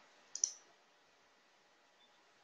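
A single short computer-mouse click about half a second in, then near silence.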